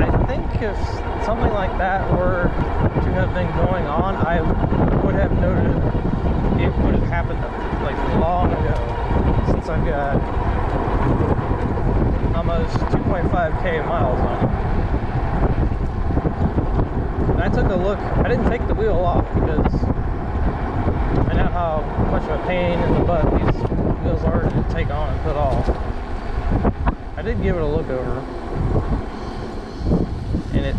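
Wind buffeting the microphone during an e-bike ride: a dense, steady rumble with wavering tones that rise and fall over it.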